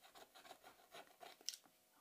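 Faint scraping and rubbing on a phone's glass screen: a run of short, irregular scratches, with one sharper click about one and a half seconds in.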